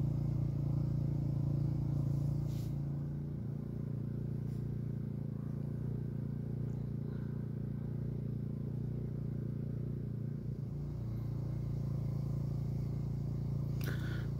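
Steady low engine hum, even in pitch, dipping slightly in level a few seconds in.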